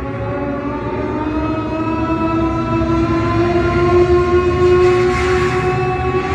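Live rock band holding a long, slowly rising tone, like a wailing guitar note or siren, over a dense drum rumble, growing louder.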